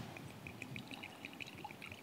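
Water being poured faintly into a glass: a quick, even run of small high-pitched glugs.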